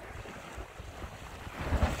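Small sea waves washing and splashing against the shore rocks, with wind buffeting the microphone; the noise swells briefly near the end.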